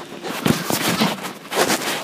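Irregular knocks and rustling bumps, the handling noise of a hand-held phone being jostled about on a swinging hammock.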